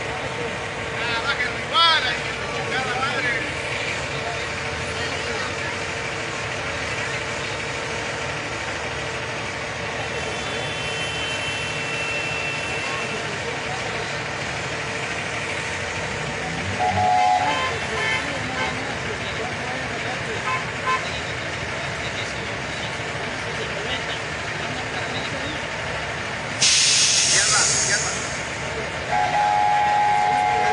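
Tractor-trailer engine idling, with a loud burst of air hiss lasting about a second and a half near the end, typical of a truck's air brakes or air system venting.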